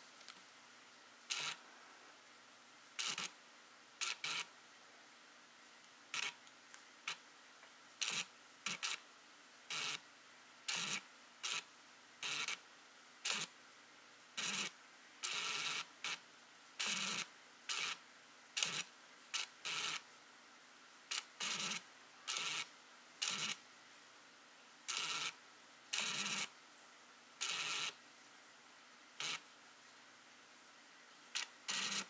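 Mechanical noise from a Sony A9 camera and its lens: short clicking and whirring bursts, about one a second at irregular intervals.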